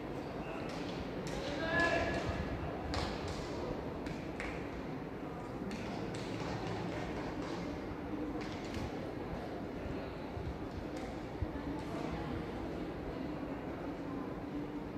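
Distant voices and chatter, with one voice calling out briefly about two seconds in, over a steady background hum and a few faint knocks.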